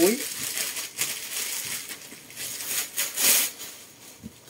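A bag being picked up and handled: crinkling and rustling in several short bursts, the loudest a little after three seconds in, dying away near the end.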